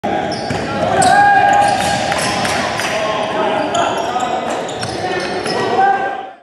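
Basketball game sounds in a gym: a ball bouncing on the hardwood and sneakers squeaking in short, high-pitched chirps, with players' voices, all echoing in the large hall.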